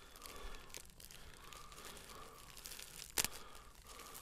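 A plastic mailer envelope being pulled and torn open by hand: faint rustling of the plastic, with one sharp tearing snap about three seconds in. The mailer is hard to tear open.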